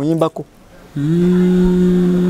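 A man's voice briefly talking, then, about a second in, holding one long, level hummed note that carries on past the end.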